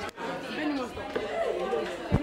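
Indistinct, overlapping chatter of several voices in a classroom.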